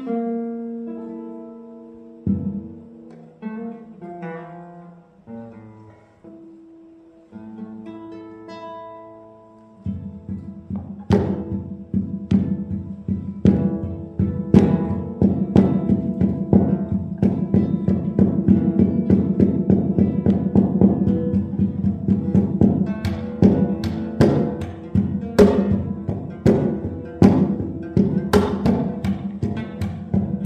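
Solo classical guitar: slow, sparse notes left to ring for the first third, then from about ten seconds in a louder, fast, driving passage of rapidly repeated notes.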